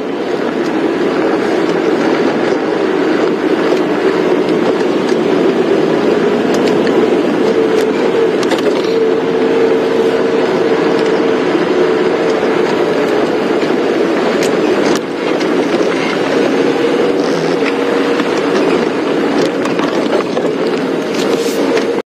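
Safari game-drive vehicle driving along a dirt track: its engine runs with a steady drone, with occasional knocks from the bumpy ground and a brief dip in loudness about fifteen seconds in.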